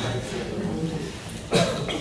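Low, murmured men's voices, then a short sharp cough-like burst into a microphone about three-quarters of the way through, with a smaller one just after.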